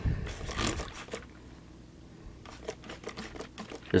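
Hand trigger spray bottle squirting cleaner onto a dirty differential: a run of sprays in the first second, a pause, then a quick series of short sprays near the end.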